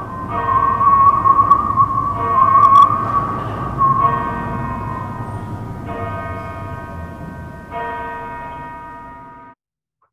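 A large bell tolling slowly, five strokes about two seconds apart, each ringing on as it fades. A wavering higher tone sounds over the first few strokes, and the ringing cuts off suddenly near the end.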